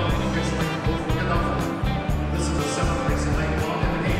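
Music with a steady beat and a moving bass line.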